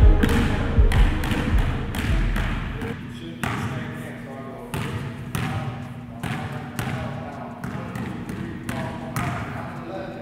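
Basketballs bouncing on a gym floor as they are dribbled, in irregular strokes roughly once a second, each bounce ringing in the hall.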